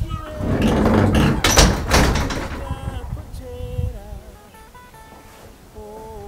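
A wooden house door pushed shut with a couple of knocks about one and a half to two seconds in, then background music with held keyboard notes.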